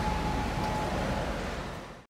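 Urban outdoor ambience: a steady rumble and hiss of city traffic with a faint steady whine that stops about a second in, all fading out at the end.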